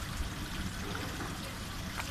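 Swimming-pool water trickling and lapping steadily at the tiled edge as small hands dabble in it.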